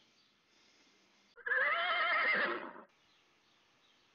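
A horse whinnying once, a sound effect with a trembling, wavering pitch lasting about a second and a half, starting about a second and a half in.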